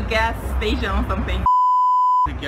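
A person talking, then about one and a half seconds in a steady, high-pitched censor bleep replaces the soundtrack, covering a word.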